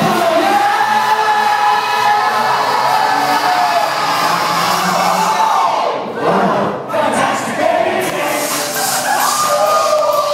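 Loud pop music with singing, played over a hall sound system, with the audience's crowd noise. About six seconds in, the music briefly thins out and drops in level, then comes back in full.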